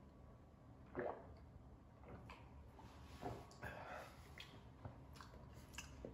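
Faint sipping and swallowing of a carbonated drink, with a few soft mouth sounds spaced about a second apart.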